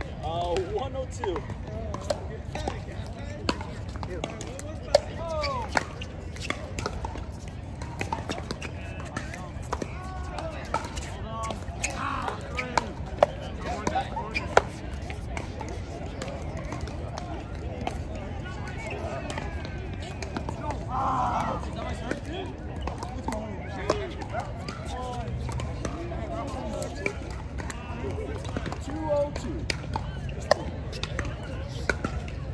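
Pickleball paddles striking a hard plastic ball: sharp pops at irregular intervals through the rallies, a few clustered close together, over a steady low rumble and voices.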